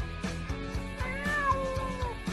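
A cat meowing once, one long meow starting about halfway through that rises and then falls in pitch, over upbeat background music with a steady beat.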